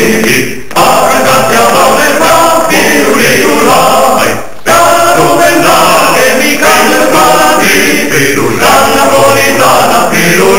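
Music: a choir singing, with two brief lulls, just under a second in and about four and a half seconds in.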